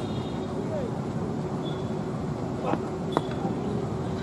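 Open-air cricket ground background of crowd chatter and a steady hum. Near three seconds in come two sharp knocks about half a second apart: a tennis ball bowled and struck by the bat.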